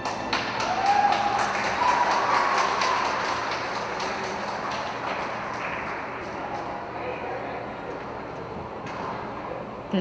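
Rink spectators applauding with a few cheering voices as a figure skating program ends. The clapping starts just after the music stops, is loudest over the first few seconds, then slowly dies away.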